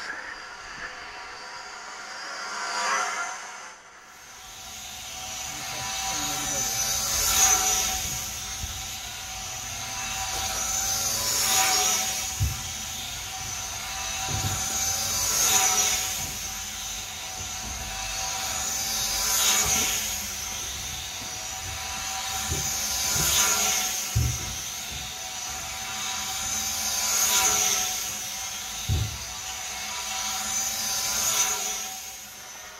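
Small electric drone motors and propellers of a four-engine model Lancaster bomber flying round a pole. The whine swells and fades about every four seconds as the model laps past, with a few soft knocks along the way.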